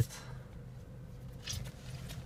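Quiet car-interior background with a steady low hum, and a soft rustle of hands handling a small sticker about one and a half seconds in.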